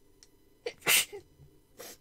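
A woman sneezing once, loudly, about a second in. A short 'ah' comes just before the sneeze and a quieter rush of breath comes near the end.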